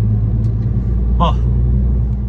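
Heavy truck's diesel engine droning steadily while cruising on the road, heard from inside the cab.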